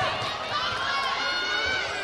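Several voices shouting over one another around a taekwondo bout, raised and high-pitched, with no pause.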